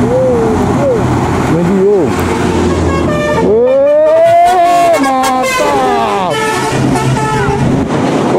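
A tour bus passing close by with its horn sounding for about three seconds in the middle, the tone bending up and then falling away. The running of its engine and the truck behind it is heard underneath.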